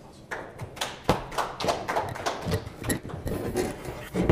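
Scattered applause from a small audience: a run of separate hand claps that thins out after about three seconds.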